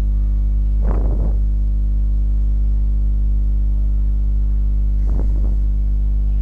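Steady low hum with a stack of even overtones, typical of mains hum picked up on the recording line. Two brief bursts of voice cut through it, about a second in and again near the end.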